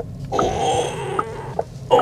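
Low, steady road and suspension rumble inside the cabin of a Cupra Born electric hatchback as it eases slowly over a bump. Soft ticks come about every half second, and a hushed, breathy noise lasts about a second.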